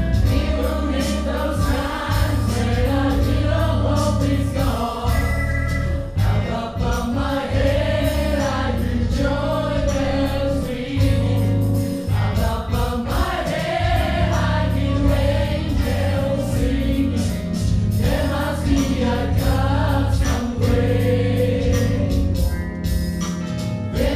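Gospel choir singing in harmony over a live band, with a strong bass line and a steady beat.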